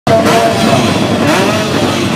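Several drag-racing motorcycle engines running together, their pitches wavering up and down as they are blipped.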